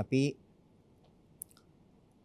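A man speaks one brief word, then pauses in near silence broken by a single faint mouth click about halfway through, picked up close by a lapel microphone.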